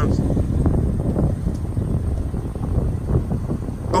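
Low rumbling wind noise buffeting the microphone, steady throughout with irregular gusts.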